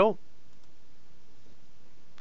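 Steady low background hiss with a few faint clicks from a computer keyboard and mouse as text is entered.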